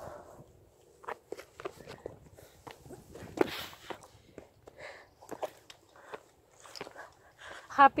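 Irregular footsteps and scuffs with faint talk in the background.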